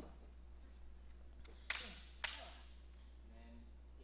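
Two sharp clacks about half a second apart, from practice swords striking in a sword fight, over a faint steady low hum.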